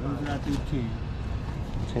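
A person's voice speaking briefly and quietly at the start, then steady low background noise.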